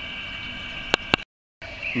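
Steady background hiss, then two sharp clicks about a second in, followed by a brief dead silence where the recording is cut.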